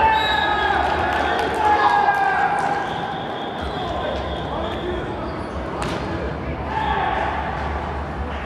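Players shouting and calling out with no clear words, echoing in a large indoor sports hall. The voices are loudest in the first three seconds and rise again near the end, with scattered sharp knocks and thuds and a steady low rumble of the hall beneath.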